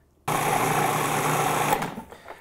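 Food processor motor running in one short pulse of about a second and a half, its blade chopping basil, garlic and pine nuts with olive oil into a coarse pesto. It starts and stops abruptly.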